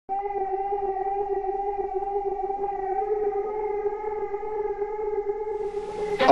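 A single steady, siren-like tone held at one pitch, starting right at the opening.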